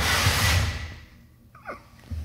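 A loud rush of hiss and rumble right on the phone's microphone for about a second, from the phone being handled against someone's head or breathed on at close range. It dies away to quiet, with a brief faint falling sound near the end.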